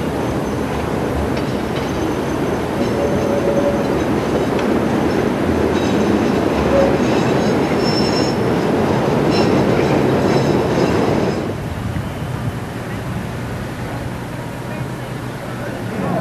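Chicago 'L' elevated train running past on its steel elevated structure, a loud rumbling clatter with high wheel squeal over it. The noise builds for about ten seconds, then falls away sharply about eleven seconds in.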